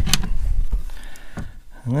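Wooden overhead locker door in a camper van being opened and lifted on its gas struts: a click just after the start and another knock about a second and a half in.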